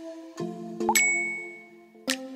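A bright chime dings once about a second in and rings briefly as it fades, over soft background music with held notes.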